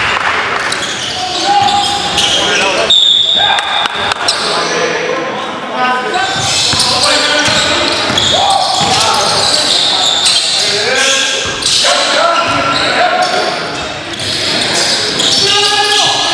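Live sound of an indoor basketball game: a basketball bouncing on a hardwood gym floor, with short sharp squeaks and players' voices calling out, echoing in the hall.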